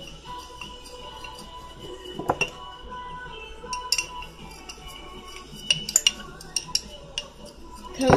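Glass jars and kitchen utensils clinking as they are handled at a dish rack. There are a few sharp clinks about two seconds in, a couple near four seconds and a quick cluster around six seconds, over faint background music.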